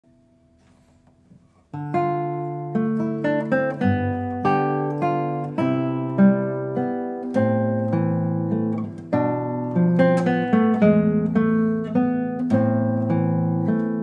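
Solo classical guitar with nylon strings played fingerstyle: a flowing line of plucked notes over a bass line. It begins almost two seconds in, after a faint lead-in.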